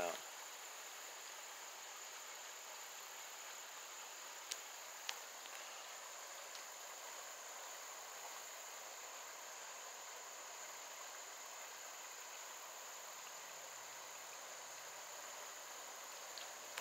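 Faint, steady high-pitched drone of insects such as crickets, with two short clicks about four and a half and five seconds in.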